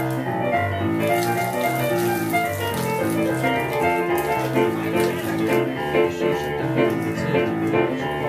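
Blues piano played on a Yamaha digital stage piano: a steady rhythmic left-hand bass line under right-hand chords and runs.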